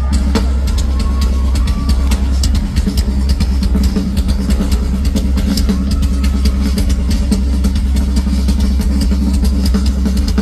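Live drum kit played solo through a festival PA: a fast, busy run of hits over a heavy, muddy low-end rumble.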